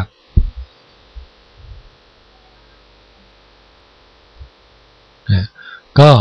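Faint steady electrical hum in the recording during a pause in speech, with a few soft low thumps in the first two seconds and a brief voice sound near the end.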